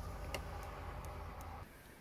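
A few faint ticks of a stylus tapping a small touchscreen that is not responding, over a low steady hum that cuts off near the end.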